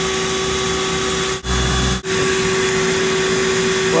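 Bee vacuum running steadily with a constant motor hum. Two short dropouts break it about a second and a half in, with a brief low rumble between them.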